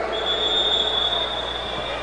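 One long, steady, high-pitched whistle blast held for nearly two seconds, over the background noise of the arena.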